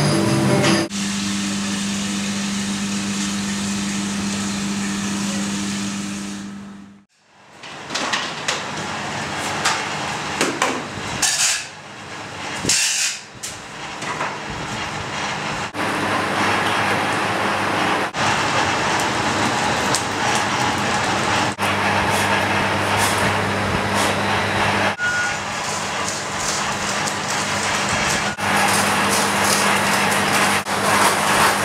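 Steady mechanical hum and noise of foundry workshop machinery. It is heard in several abruptly cut segments, with a brief drop almost to silence about seven seconds in.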